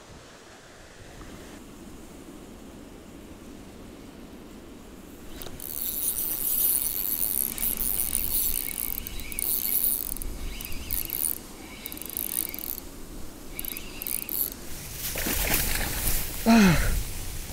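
Fishing reel being cranked: a high whirring that starts about five seconds in and comes and goes in stop-start bursts, with the rod bent under load.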